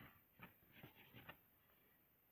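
Faint scratching of a felt-tip Color Wonder marker scribbling on glossy colouring paper: a handful of quick short strokes in the first second and a half, then near silence.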